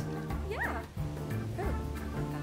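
Soft background music with two short, high dog whimpers over it. The first, about half a second in, rises and falls in pitch, and a weaker one follows about a second and a half in.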